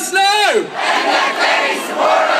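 A large crowd chanting a protest slogan in unison, its last word drawn out and falling away about half a second in. Then the voices break into a general din of many people shouting.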